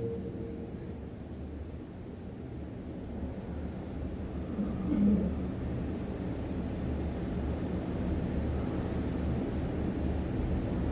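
Low, steady background rumble, growing slightly louder through the second half, with one short low sound about five seconds in.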